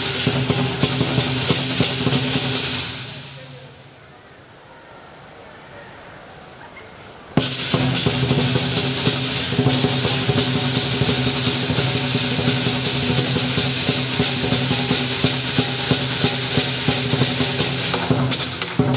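Southern lion dance percussion: a big drum with cymbals and gong playing a dense, driving rhythm. About three seconds in it breaks off, the ringing dying away to a quiet pause, and about seven seconds in it crashes back in at full strength.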